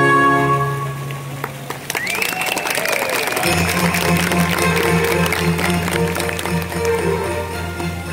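A recorded Baroque-style orchestral piece ends in the first second, and audience applause follows. From about three and a half seconds a steady low hum sets in under the clapping.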